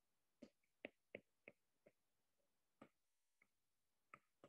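Faint, irregular ticks of a stylus tapping on a tablet's glass screen during handwriting, about seven short taps over a few seconds.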